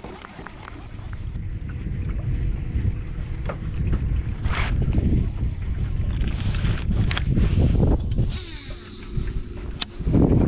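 Wind buffeting the microphone as a low rumble that grows louder after the first couple of seconds. A few sharp clicks and knocks come from a baitcasting rod and reel being handled.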